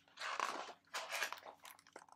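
Pages of a hardcover picture book being turned and handled: two short spells of paper rustling, followed by a few small clicks.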